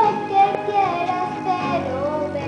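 A young girl singing a Spanish pop ballad over a backing track, her held note sliding downward in pitch near the end.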